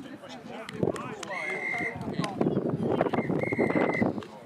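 Referee's whistle blown twice, a steady shrill blast of about half a second and then a longer one near the end, over players' shouting voices; these are plausibly the full-time whistles.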